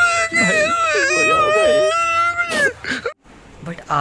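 A man's exaggerated comic crying: one long, high, wavering wail that stops suddenly about three seconds in. A man starts talking just before the end.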